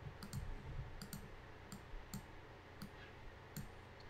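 Faint computer mouse clicks, several of them at irregular intervals, as a colour is picked and adjusted in a software dialog.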